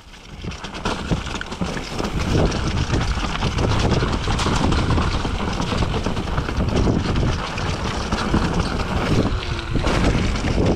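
Wind buffeting the camera microphone as a mountain bike descends a muddy trail, with tyre roll and frequent knocks and rattles from the bike over the rough ground. It builds up over the first couple of seconds as speed picks up.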